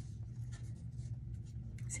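Tarot cards faintly rustling and flicking as the deck is handled in the hands, over a steady low hum.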